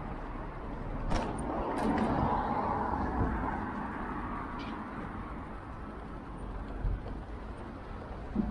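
Street traffic: a motor vehicle passing close, swelling about a second in and fading over the next few seconds, over a steady low rumble. A few sharp clicks near the start of the swell.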